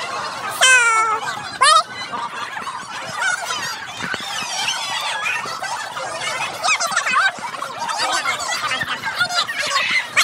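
Sped-up voices and chatter, raised to a squeaky, high pitch. Two loud rising-and-falling squeals stand out about a second in and just before two seconds.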